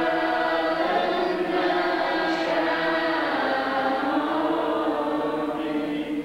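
A group of Buddhist monks chanting together in unison, with long held notes that stop about six seconds in.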